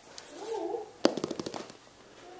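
A sharp click about a second in, followed by a quick rattle of clicks lasting about half a second, from a kitten knocking at a metal clothes airer.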